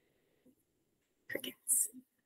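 Silence for over a second, then two brief, soft, breathy sounds from a woman's voice in the second half, whisper-like rather than spoken words.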